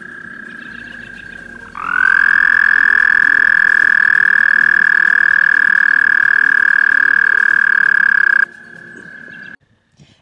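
A male American toad's mating trill: one long, high, even trill lasting about seven seconds, starting about two seconds in. A fainter trill from another toad runs before and after it.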